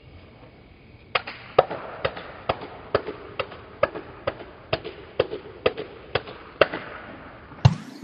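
A run of about thirteen evenly spaced hand claps, roughly two a second, while a thrown ball is in the air. Near the end comes a deeper thud as the rubber playground ball is caught in both hands.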